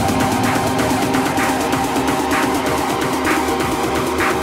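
Progressive house music: sustained synth tones over fast, even ticking percussion, with recurring short accents. The deep bass is thinned out.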